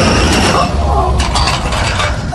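A mechanical film sound effect: a whirring with a steady high whine, then a quick run of sharp clicks a little after a second in, over a low rumble.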